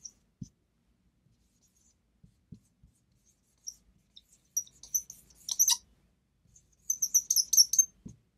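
Marker squeaking on a whiteboard as words are written: clusters of short, high squeaks, the loudest run about five and a half seconds in and another near the end.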